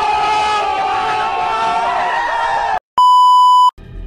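A crowd of people shouting and screaming together, many voices held at once, cutting off suddenly about three seconds in. After a brief gap comes a short, loud, steady censor bleep lasting under a second.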